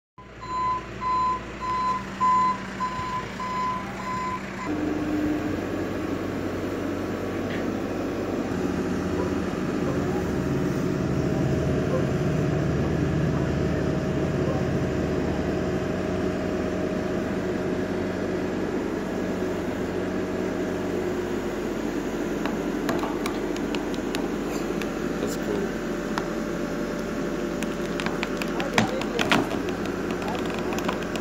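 Case Extendahoe backhoe loader's reversing alarm beeping about twice a second, then cutting out. Its diesel engine then runs on steadily, working harder through the middle as the bucket pushes against a fruit tree trunk, with a few sharp knocks near the end.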